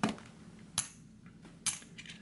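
Copper bullion rounds clinking as they are handled and set down, three sharp metallic clicks under a second apart, each with a short ring.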